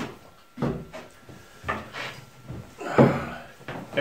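Handling knocks and scrapes, about three of them: a stainless steel saucepan set down on a cloth-covered wooden table and a wooden chair moved as someone sits down, the loudest about three seconds in.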